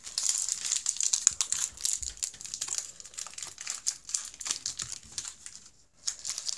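Foil Pokémon booster-pack wrappers crinkling as packs and trading cards are handled, a dense run of crackles that stops briefly just before the end.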